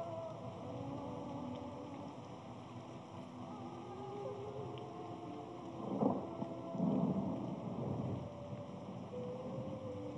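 Muffled, low-fidelity film soundtrack: sustained low tones that shift in pitch like held chords, with two louder swells about six and seven seconds in.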